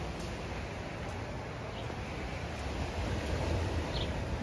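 Steady rushing noise of wind on the microphone mixed with waves washing against a rocky shore.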